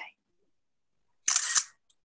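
The end of a woman's word, then almost total silence, broken a little over a second in by one short, hissy burst of noise lasting about half a second.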